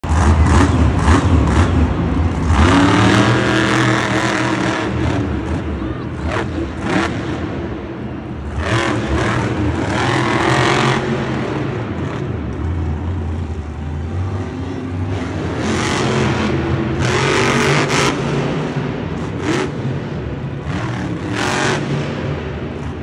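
Monster truck's supercharged V8 engine revving hard in surges a few seconds apart, each rise in pitch followed by a drop back, heard from the stands of an enclosed stadium.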